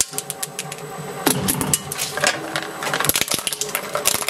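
Twin-shaft shredder running, with a steady motor hum and rapid clattering from its rotating cutters. The clatter grows denser near the end as a pop-it fidget toy lands on the blades.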